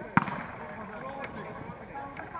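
A football kicked once, a single sharp thud just after the start, over distant shouts from players and spectators.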